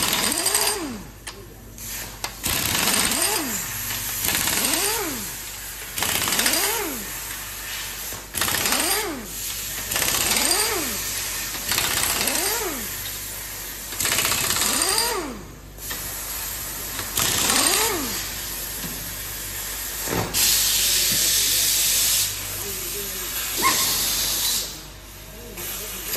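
Air impact wrench undoing the clamping nuts on a multi-cavity ball mould, nut after nut, in short hammering bursts about every two seconds, each rising and then falling in pitch as the tool spins up and stops. About three-quarters of the way through there is one longer, steadier burst.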